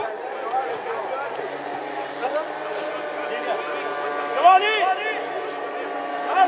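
Voices calling out and chattering across a football pitch, with one louder shout about four and a half seconds in.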